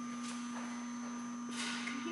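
A steady, even hum runs under the quiet. About one and a half seconds in, a short burst of noise rises briefly.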